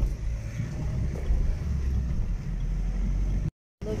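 Steady low rumble of a moving passenger vehicle, engine and tyre noise heard from inside the cabin. The sound cuts out completely for a moment near the end.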